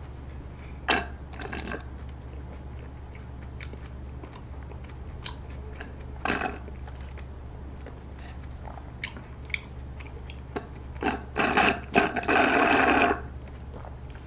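Milk sucked through a straw from a paper milk carton, with scattered short sucking and swallowing sounds, then a louder, rougher slurp lasting about a second near the end. A low steady hum runs underneath.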